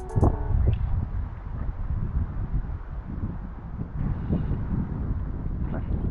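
Wind buffeting the camera's microphone: a low, uneven rumble that swells and eases.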